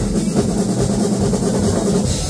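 Two acoustic drum kits played together along with music, a steady, dense groove with no break.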